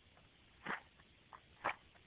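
A match struck against a matchbox striker: two short scratches about a second apart, with a fainter one between them. The match fails to light.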